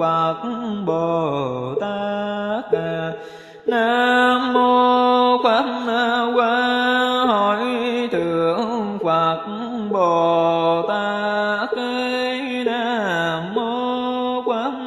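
A voice chanting a Buddhist mantra in a sung, melodic style, holding long notes and sliding between pitches, with a short break about three and a half seconds in.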